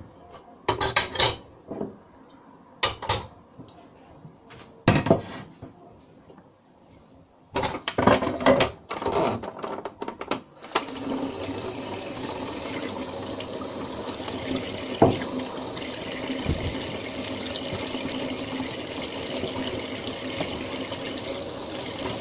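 Dishes and pans clinking and knocking at a kitchen sink for about the first ten seconds. Then a kitchen tap is turned on and runs steadily.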